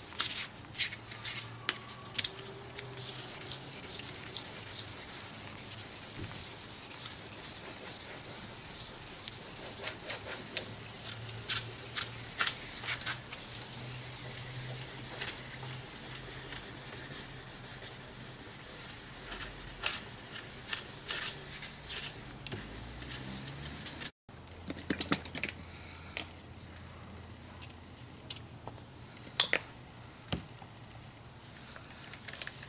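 Clear coat on a car's bumper cover being wet sanded by hand with fine-grit sandpaper, water and a touch of soap, to level orange peel. It is a steady rubbing hiss with many short scratchy strokes. It stops at a cut near the end, and fainter scattered clicks follow.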